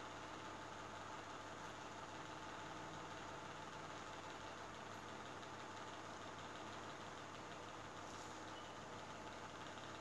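Faint, steady room tone: a low, even background hum and hiss with no distinct events.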